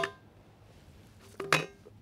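A steel plate ringing and fading just after a 30-round-loaded AC Unity polymer AK-47 magazine is dropped onto it base first. About a second and a half in, the magazine knocks on the plate again with a short ring as it is lifted off.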